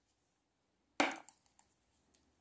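A single sharp tap of a knitting needle about a second in, with a faint tick just after; otherwise very quiet.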